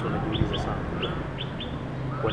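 Small birds chirping: a run of short, high chirps, about six in two seconds, over a steady low background hum.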